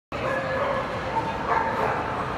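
Dogs barking and yipping over a steady murmur of crowd voices.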